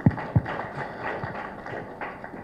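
Audience applauding: an even patter of clapping, with two soft knocks near the start.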